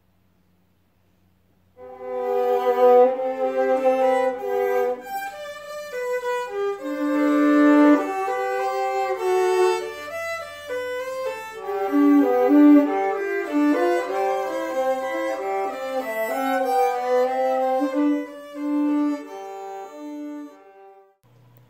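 Two violins playing a duet, two melodic lines sounding together note by note, starting about two seconds in after near silence.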